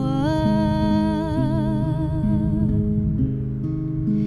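A woman's voice holds one long sung note with a slight vibrato, fading out about three seconds in, over acoustic guitar playing a steady pattern of plucked notes.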